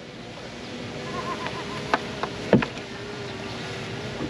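Steady outdoor background noise with a faint steady hum, broken by a few short clicks and one sharper knock about halfway through as a magnet-fishing rope and its catch of rusty water pipe are hauled up against a riverbank wall.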